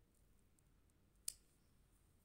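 Near silence, with one short, sharp click of a metal fork, just over a second in, as it is lifted off the paper after printing.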